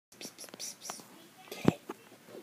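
A person whispering short, hissy calls to a cat, several in quick succession, followed by one sharp tap near the end.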